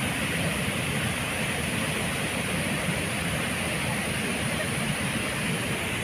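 Flooded river rushing steadily over a weir, a continuous even noise of high, fast-moving water.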